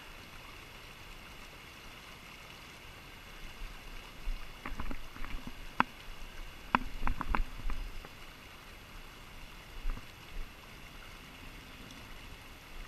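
River current running steadily over riffles, with a handful of sharp clicks and knocks from handling in the middle.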